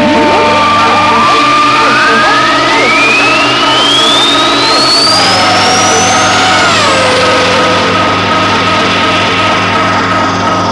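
Progressive techno track with a steady beat. A long synth sweep rises from deep bass to very high pitch over about seven seconds, and a second synth tone bends downward a little past the middle.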